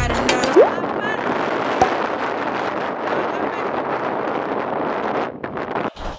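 Strong wind rushing steadily across the microphone, cutting off abruptly near the end.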